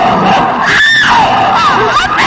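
A person screaming, the pitch wavering, with a shriller held cry about a second in.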